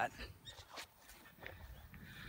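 Faint, irregular footsteps on grass and handling noise from a phone held while walking.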